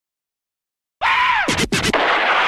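Silence for the first second, then the electronic dance remix starts with a DJ scratch effect: a pitch that arcs up and swoops down, broken by two short cut-outs.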